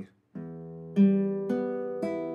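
Nylon-string classical guitar: three open strings plucked one after another with the fingers, each left to ring on under the next. The second and third notes are louder than the first.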